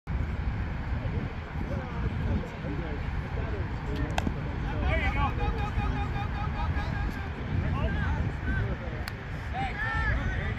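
Wind rumbling on the microphone, with a single sharp wooden crack about four seconds in, a bat striking the ball, followed by players shouting across the field; another short knock comes near the end.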